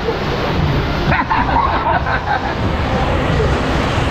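Rushing, splashing water as an inflatable tube slides fast down an open water-slide flume, with a brief shout or laugh from a rider about a second in.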